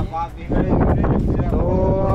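Wind rumbling on the microphone, then a man's long, drawn-out call about one and a half seconds in.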